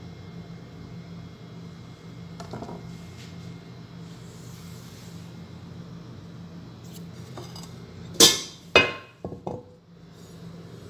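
Kitchenware clattering: two loud, sharp clinks about half a second apart near the end, followed by a few lighter knocks, over a low steady hum.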